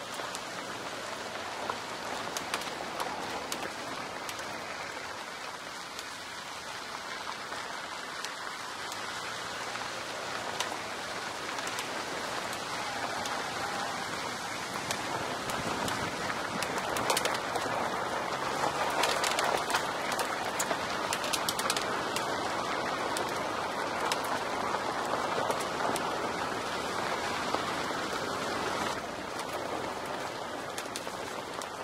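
Car tyres rolling over a loose gravel road: a steady crunching hiss with many small stone clicks and pings. It grows busier and louder past the middle and eases off just before the end.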